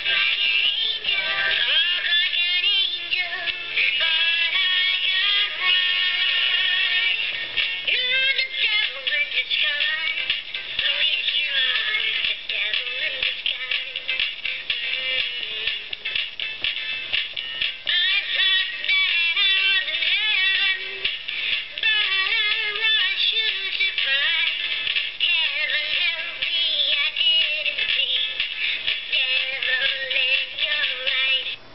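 Gemmy animatronic singing hamster toy playing its song through its small built-in speaker: a high-pitched singing voice over backing music, thin, with almost no bass.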